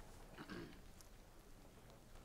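Near silence: room tone with a low steady hum, and one brief faint voice-like sound about half a second in.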